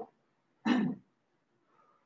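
A man clearing his throat once, briefly, just under a second in.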